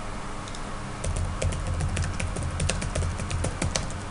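Typing on a computer keyboard: a quick, irregular run of keystrokes that starts about a second in and goes on until near the end.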